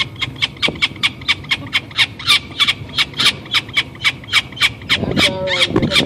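Peregrine falcon calling in a fast, even run of short, sharp notes, about five a second. A person's voice joins near the end.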